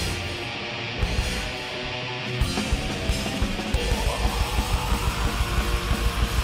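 Black metal band playing live, with distorted electric guitars, bass and drums. From about the middle, the drums settle into fast, even beats under the guitars.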